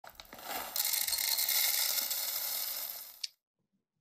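A dense, steady rattling, grinding noise. It grows brighter just under a second in, then fades and stops a little past three seconds in.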